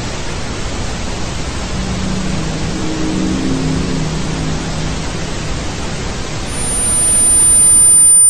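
Steady hiss of TV static that cuts in abruptly. Faint low pitched sounds lie under it around the middle. About six and a half seconds in, a loud, piercing high tone joins the hiss.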